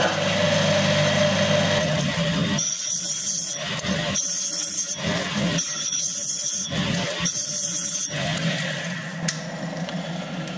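Electric motor driving a flat sharpening disc, running steadily. About two and a half seconds in come four grinding strokes of about a second each, as the cutting edge of a hand scraper is pressed against the face of the disc to touch it up.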